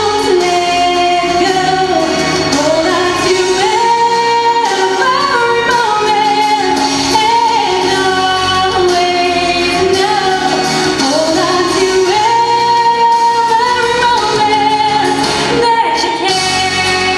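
A woman singing solo into a handheld microphone over instrumental backing, the melody moving in long held notes.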